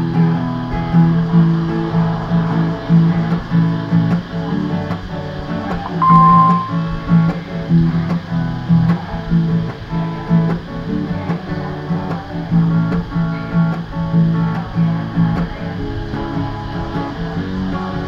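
Capoed acoustic guitar strummed in a steady rhythm, changing between open chords (G, Am, C, D).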